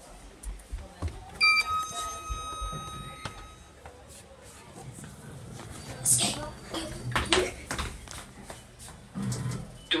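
A lift's electronic chime rings once about a second and a half in: a bright bell-like ding whose tones fade over about two seconds. Children's hushed voices and laughter follow later.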